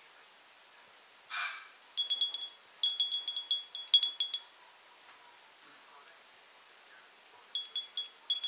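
A small high-pitched chime tinkling in quick strikes, each ringing at the same pitch. There is one run of a couple of seconds starting about two seconds in, and another begins near the end. A short hiss comes just before the first run.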